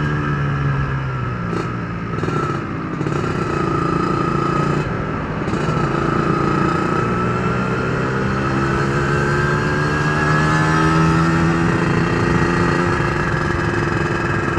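Yamaha RXZ's single-cylinder two-stroke engine running while riding. Its pitch dips a couple of seconds in, then climbs steadily through the middle as the bike gathers speed.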